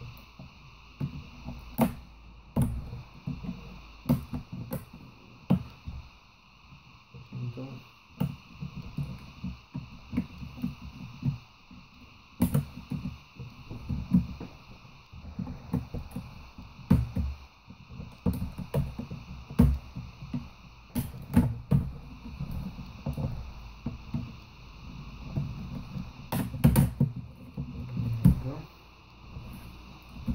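Irregular plastic clicks, snaps and knocks as an HP Notebook 15 laptop's keyboard is pried loose from its palmrest with a thin pry tool and worked free by hand, with a few louder knocks.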